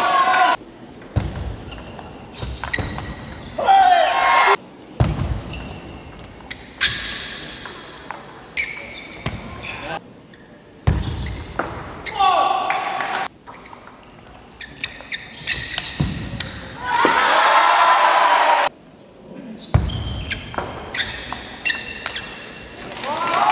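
Table tennis rallies: the ball clicking off the bats and the table in quick runs of sharp ticks, broken by loud shouts from the players after points, one of them long near the end. The sound breaks off abruptly several times between rallies.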